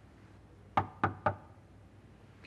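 Three quick knocks on a wooden office door, about a quarter second apart.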